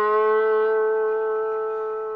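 Epiphone Casino electric guitar played with a bottleneck slide on the G string: a single sustained note that lifts slightly in pitch near the start, then rings on and slowly fades, the slide moving between the low frets in the final tag of the solo.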